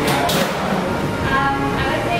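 Background music and talk at a restaurant ordering counter, with a brief hiss about a second in.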